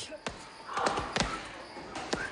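Gloved punches landing on punching bags in a boxing gym: a handful of sharp thuds, most of them bunched together in the middle.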